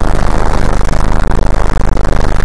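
The 2008 Ford Focus's two-litre four-cylinder engine idling, heard from inside the cabin as a loud, steady low rumble with hiss.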